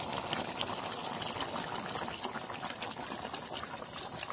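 Thick pork and potato curry simmering in a pot: steady bubbling with many small pops and spits from the gravy.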